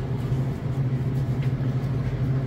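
A steady low hum over a rumbling background, with no clear events.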